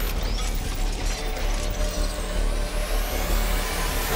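Cinematic logo-animation sound design: dense mechanical clicking and whirring over a deep, steady rumble, with a high sweep rising through the second half as the sting builds.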